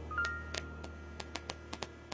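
Soft piano accompaniment of a ballad, a held note slowly fading, with a scattered run of small clicks.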